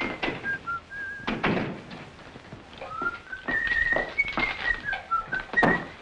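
A person whistling a cheerful tune in clear, stepping notes, with several dull knocks among them.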